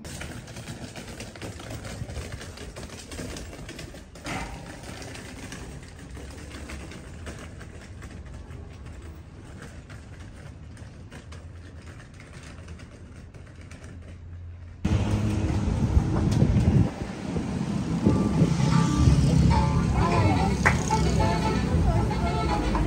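Hard suitcase wheels rattling over a cobblestone path, with a low steady rumble underneath. About fifteen seconds in, the sound cuts suddenly to much louder outdoor noise with voices and music.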